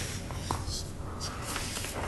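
Sheets of paper rustling and being handled at a table, in short scattered soft rustles, over a low steady room hum.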